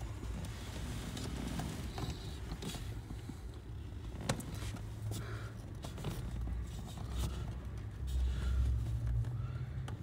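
Hands handling the plastic wiring connector and harness behind the glove box: scattered small plastic clicks and rustling, over a low rumble.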